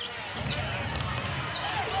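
Basketball arena sound from a game in play: a steady crowd murmur with a ball being dribbled on the hardwood court.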